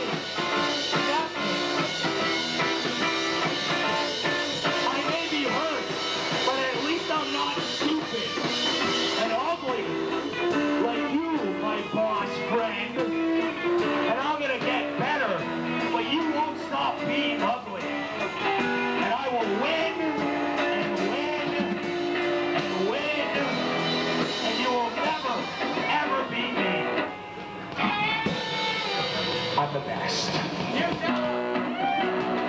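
Live rock band playing a song, guitar to the fore. The bright high end thins out about nine seconds in, and the sound dips briefly near the end.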